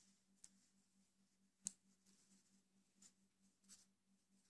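Near silence broken by about four faint, short clicks of metal circular knitting needle tips touching as stitches are worked, the sharpest a little past a second and a half in.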